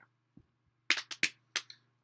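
Four sharp clicks and knocks in quick succession about a second in, preceded by a faint thud, from gift items being handled, set down and picked up. A faint steady low hum runs underneath.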